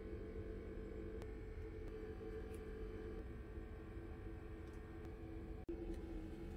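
Quiet indoor room tone with a low, steady hum and a faint tick about a second in.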